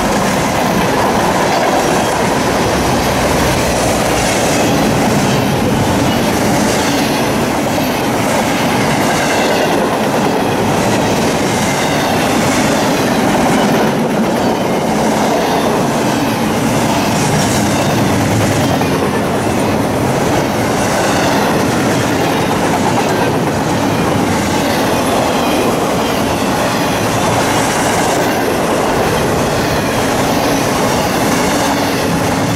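Freight train passing close by, a string of refrigerated boxcars and then double-stack container cars. Its wheels run steadily and loudly on the rails with a clickety-clack over the rail joints.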